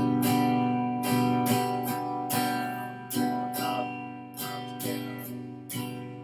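Electric guitar strumming one chord in a down-and-up strumming pattern, about a dozen strokes with the chord ringing between them and short dips between groups of strokes.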